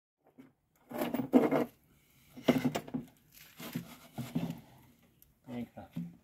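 Silence for about a second, then a man talking in short phrases.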